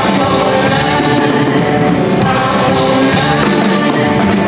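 A live blues-rock band playing: a woman singing lead over electric guitars, with drums and cymbals keeping a steady beat.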